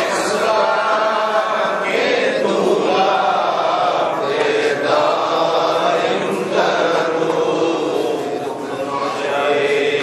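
A group of men chanting together in unison, a continuous many-voiced recitation with no pauses.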